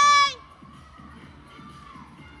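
A girl's high-pitched cheering shout of "Let's go!", its last word drawn out and cutting off about a third of a second in. Faint music for the floor routine continues underneath.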